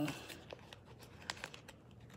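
Faint crinkling and a few small clicks from a clear plastic package being handled.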